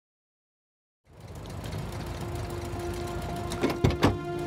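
Car engine idling with a steady low rumble and hum, coming in after about a second of silence. Two sharp knocks about a fifth of a second apart come near the end.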